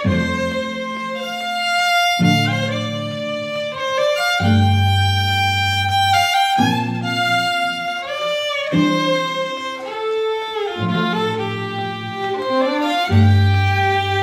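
Two fiddles playing a lively melody together over two cellos bowing low held notes that break off about every two seconds.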